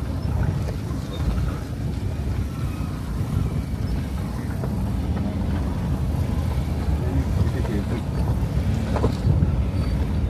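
Steady low rumble of a vehicle travelling over a gravel road, with wind buffeting the microphone.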